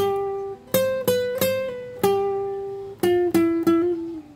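Nylon-string classical guitar playing a single-note melody in Central Highlands folk style, plucked note by note. There are a few spaced notes, then a long held note about two seconds in, then a quick run of notes near the end.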